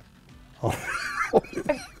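A person's voice: an exclamation of 'oh' a little past the middle, then short bursts of laughter near the end.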